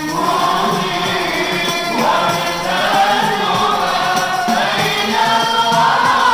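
Male voice singing an Islamic maulid chant (qaswida) into a microphone in long, drawn-out melodic phrases, backed by group voices, with hand frame drums with jingles beating along.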